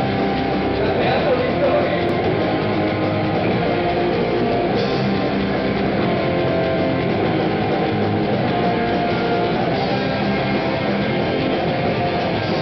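Rock band playing live: electric guitars and bass over a drum kit, loud and continuous.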